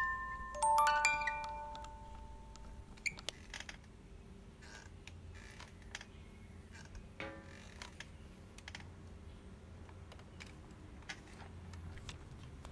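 A few bell-like chime notes ring out and die away in the first two seconds. After that the room is quiet, with a low steady room tone, scattered faint clicks and knocks, and a short creak about seven seconds in.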